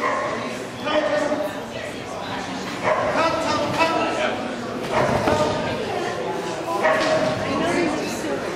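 Dog barking repeatedly while running an agility course, mixed with a handler's calls.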